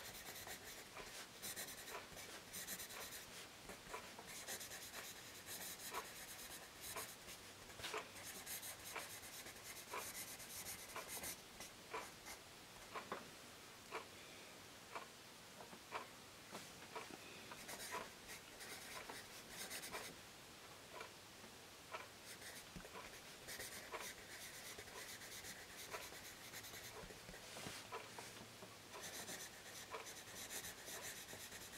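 Tombow Mono 100 B graphite pencil writing cursive on Rhodia graph paper: a faint, whisper-quiet scratching of the soft lead, with light ticks every second or so as the point touches down and strokes begin.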